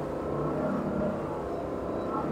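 A wake boat's 6.2-litre Raptor 440 inboard engine running steadily under load at about 11 mph with full ballast, mixed with the rush of the churning surf wake behind the stern.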